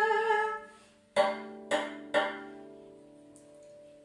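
A short sung note, then three notes struck by hand on a D major RAV drum (steel tongue drum) about half a second apart, each ringing on and fading away slowly.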